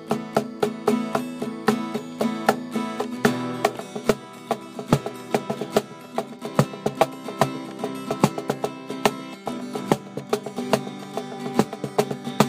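Guitar played live in an informal jam: plucked and strummed notes in a loose, uneven rhythm, and the low notes change about three seconds in.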